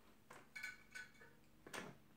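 Faint, brief scrapes and clicks of a 3/4-inch angle brush being loaded on a face-paint split cake: four soft touches spread across two seconds.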